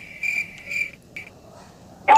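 Insects chirping outdoors, a high pulsing trill that fades out after about a second, with a single faint click partway through.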